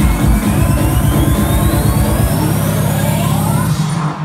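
Electronic dance music from a DJ set played loud through a club sound system. A steady kick-drum beat drops out a little over two seconds in, leaving a held bass, while a rising sweep climbs in pitch throughout: a build-up in the mix.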